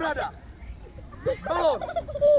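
Two short, high-pitched shouted calls from children's voices. One comes right at the start, and a louder one arches up and down in pitch about a second and a half in.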